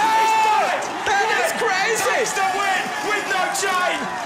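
A male commentator's excited, long shout of "Ohhh", followed by more excited shouted commentary over a cheering crowd.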